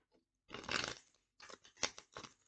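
A deck of cards being shuffled by hand: a rustling burst of cards riffling about half a second long, then a few short sharp snaps and flicks of the cards.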